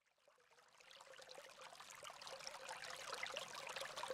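Faint crackling, trickle-like noise that swells gradually from about a second in, over a faint steady tone.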